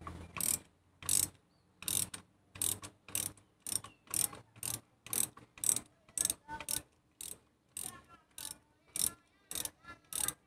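Socket ratchet with a 16 mm spark plug socket clicking in short rasps, about two a second, as it is swung back and forth to loosen a spark plug.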